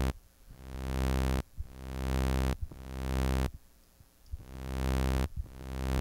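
Xfer Serum software synthesizer playing a low sawtooth note about five times in a row, each note swelling in slowly under a long envelope attack, holding briefly, then cutting off sharply.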